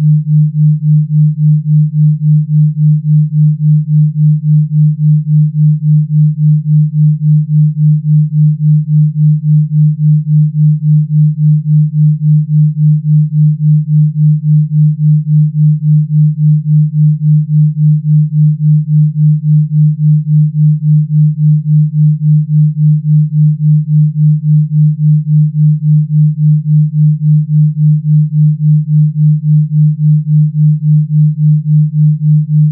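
A low electronic sine tone, a generated Rife frequency, held at one pitch and pulsing evenly about three times a second.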